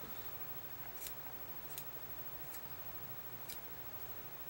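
Scissors snipping through braided nylon rope whose end has been singed hard: four short, sharp cuts spaced roughly a second apart.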